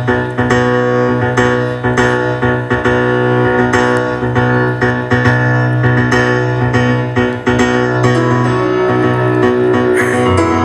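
Solo piano playing a steady instrumental introduction of repeated chords, about two a second, with no voice yet.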